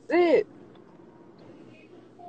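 A person's short vocal sound at the very start, rising and then falling in pitch, lasting about a third of a second. After it there is only a faint, steady low hum.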